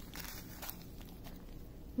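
Faint handling noises: a few light rustles and small clicks as hands move small plastic zip bags of resin drills and the paper legend.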